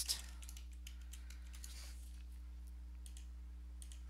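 Computer keyboard typing: a quick run of keystrokes at the start, then a few scattered taps, over a steady low hum.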